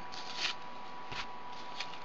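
Faint rustling and a few light scratches as cords are pulled through the slots of a cardboard braiding wheel and the wheel is turned in the hands.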